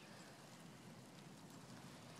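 Near silence: faint, steady outdoor background hiss.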